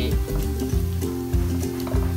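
Background music, with butter and minced ginger, garlic and onion sizzling in a hot stainless steel wok as they are stirred.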